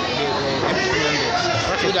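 A man's voice speaking close up, with the chatter of a crowd of people behind it.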